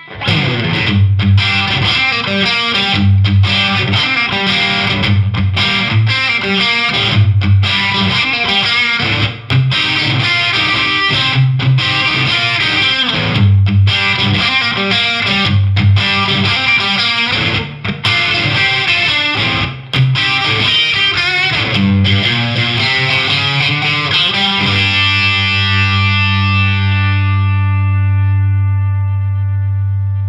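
Fender Stratocaster on its single-coil pickups, played through an MXR Classic Distortion pedal at a mid setting (distortion at noon, tone at 11 o'clock) into a Marshall DSL100HR tube amp: a distorted chord riff with a few brief stops, then one chord left to ring out and fade over the last five seconds. The distortion is moderate, and the separate notes and harmonics stay clear.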